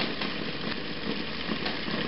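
Home-built Bedini SSG-style multi-coil charger running, its four-magnet rotor spinning past the coils with a steady machine hum.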